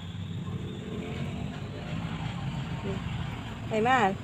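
A steady low engine rumble, like a motor vehicle running nearby. A few words of speech come near the end.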